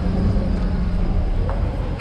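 Street noise with a low rumble and a steady engine hum, as of a motor vehicle running close by; the hum fades out about a second in.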